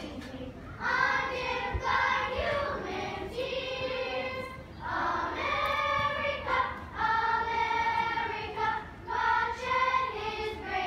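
A children's choir of boys and girls singing together, in phrases of long held notes with brief breaks between them.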